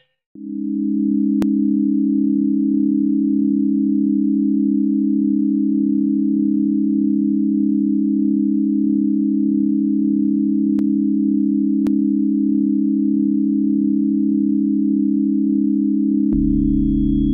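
Electronic synthesizer drone: two low tones held perfectly steady, with a faint regular pulsing above them, starting just after a moment of silence.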